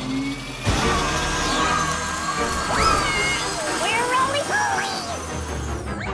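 A cartoon backpack vacuum switches on with a sudden rush of air noise about a second in and runs on steadily, with background music and gliding vocal exclamations over it.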